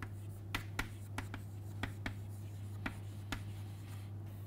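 Chalk writing on a chalkboard: a run of short, irregular taps and scrapes as a word is written out letter by letter, over a steady low hum.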